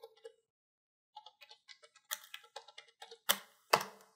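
Typing on a computer keyboard: a run of quick, irregular keystrokes, with two louder strokes near the end.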